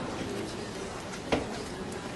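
Marker writing on a whiteboard, with light strokes and one sharp tap a little over a second in, over faint background room noise.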